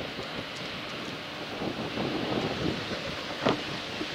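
Outdoor ambience of steady wind noise on the microphone over a low rumble, with a short sharp knock about three and a half seconds in.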